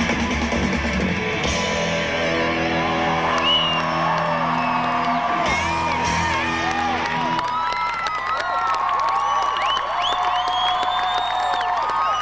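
Live rock band with guitars and drums playing out the end of a song on held chords, which stop about seven and a half seconds in. An outdoor crowd then cheers and whoops.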